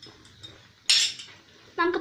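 One sharp metal clank about a second in, with a short ring after it: a metal ladle knocking against an iron kadai. A voice starts near the end.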